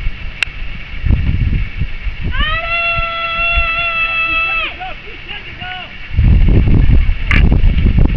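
A person on the touchline shouting one long, high, held call lasting about two seconds, its pitch rising at the start and then staying level. Wind rumbles on the microphone before and after it, and a sharp crack comes near the end.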